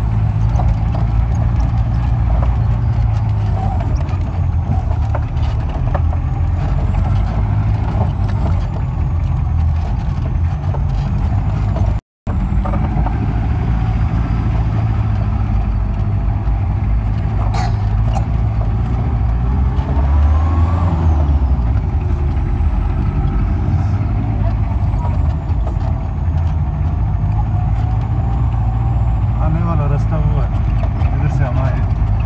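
Jeep engine running steadily under load on a rough dirt track, heard from inside the open cab, with a constant low rumble and frequent small rattles. The sound cuts out for a moment near the middle.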